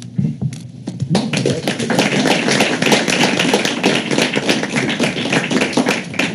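A group of people applauding, a few scattered claps at first and then full applause from about a second in.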